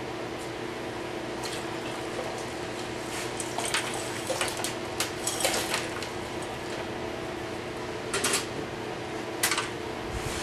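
Spent acid pickle solution poured out of a ceramic crock pot insert into a container: liquid splashing, with sharp clinks of the crock in the middle and near the end, over a steady hum.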